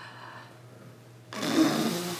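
A woman blows out a long puff of breath through pursed lips close to a phone's microphone, starting suddenly about a second and a half in after a quiet moment.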